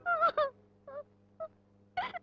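A woman sobbing in short, broken catches of breath: a few brief wavering cries, the loudest two right at the start, weaker ones after.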